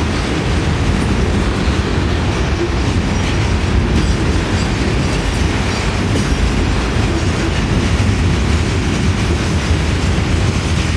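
Freight cars rolling past close by: steel wheels on rail making a steady, loud rumble.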